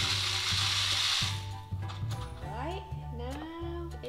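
Dried seeds pouring through a paper cone into a cardboard rain-stick tube, rattling down inside it in a loud, even rush that stops about a second in. Background music with a steady bass carries on underneath.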